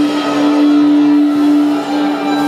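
A live band holding one loud, steady droning note, with little else playing under it.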